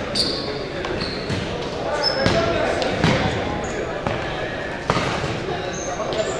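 Indoor futsal play on a hardwood gym floor: the ball is struck and bounces several times, with sharp thuds echoing in the hall. Sneakers squeak briefly, and indistinct voices of players and onlookers carry on underneath.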